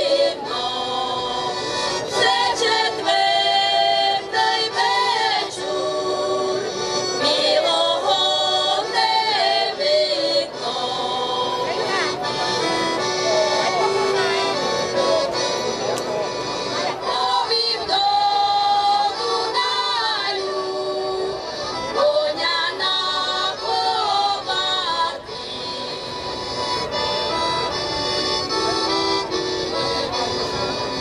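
A group of women singing a folk song together to a piano accordion accompaniment.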